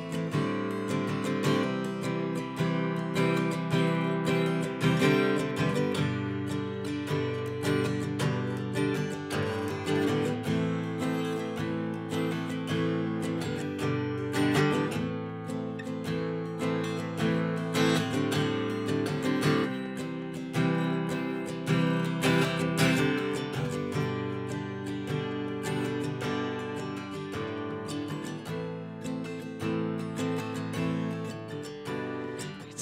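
Solo steel-string acoustic guitar strummed in a steady, even rhythm, chords ringing between strokes.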